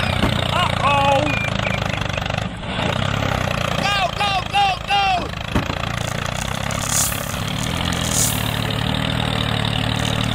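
Tractor engine running steadily at idle. A few short, high, bending calls are heard about a second in, and four quick ones around four to five seconds in.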